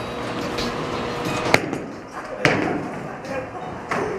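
A bowling ball released and rolling down a bowling lane, over the steady noise of a bowling alley, with two sharp knocks about a second apart in the middle.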